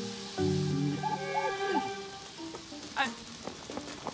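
Cartoon background music of held notes and a short melody, over a steady sizzling hiss from food burning on a barbecue grill.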